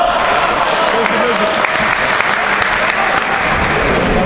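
Spectators applauding, a dense patter of clapping, with voices shouting over it during a boxing bout.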